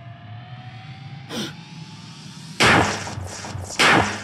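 Two loud gunshots about a second apart, the first a little past halfway and the second near the end, each with a rough fading tail, over a thin tone that slowly rises in pitch.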